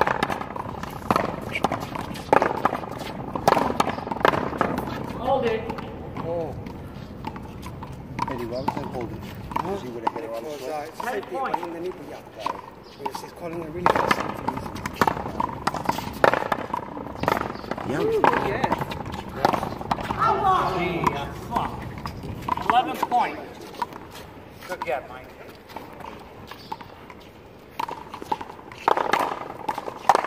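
A small rubber ball struck with paddles and smacking off a concrete wall during a one-wall paddleball rally: sharp hits come irregularly, a second or more apart. Voices talk underneath.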